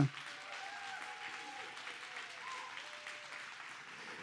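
Congregation applauding, with steady clapping and a few faint voices over it.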